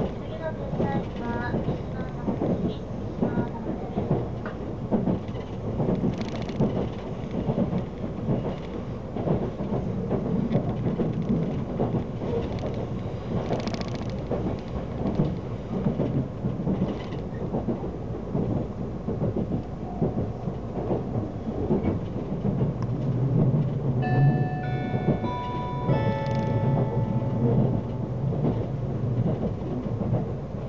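Steady low rumble of an Odoriko limited express train running along the track, heard from inside the passenger car, with wheel and rail clatter throughout. About 24 seconds in, a few seconds of high ringing tones at several stepped pitches sound over the rumble.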